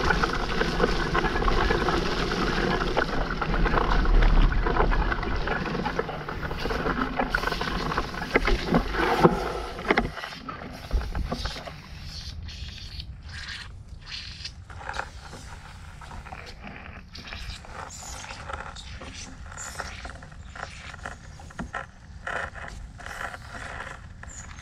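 Mountain bike being ridden over a muddy dirt trail: tyre, chain and frame noise with a strong low rumble for about the first ten seconds, then quieter riding with many short clicks and knocks.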